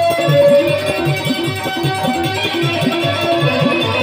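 Live folk dance music: drums keep a steady, even beat under a held, sustained melody line.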